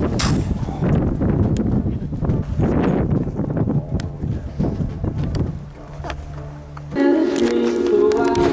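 Rustling and crunching from walking along a brushy trail, with handling noise on the microphone. About seven seconds in, background music with a steady melody starts.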